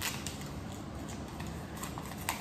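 A sheet of paper being folded and creased by hand, with faint scattered rustles and crinkles over a steady background hiss.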